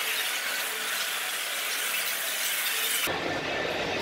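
A steady, bright hiss of noise that cuts off suddenly about three seconds in.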